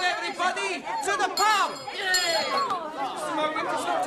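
Several voices talking and exclaiming over one another in excited chatter, a group crowding round to congratulate someone.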